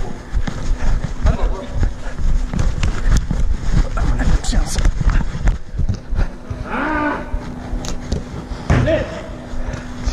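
Handling noise from a chest-mounted action camera on a running footballer: dense rumbling and irregular knocks from footsteps and body movement, over a steady low hum. A long drawn-out shout about seven seconds in, and another shorter call near the end.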